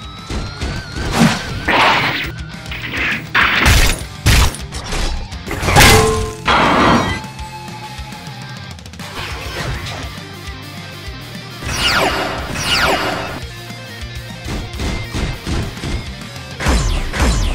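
Action-film background music with added fight sound effects: a run of sharp hits and crashes in the first seven seconds, then two falling whooshes about twelve seconds in.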